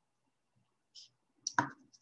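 A few short, quiet clicks: a faint one about a second in and a sharper one with a brief rustle near the end.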